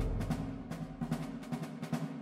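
Background music with low drum notes and quick, repeated drum strikes; a deep note fades out during the first second.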